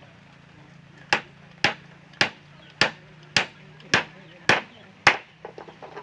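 Claw hammer driving a nail into the wooden rail of a plank chair frame: eight even strikes about half a second apart, the last the loudest, then a few light taps near the end.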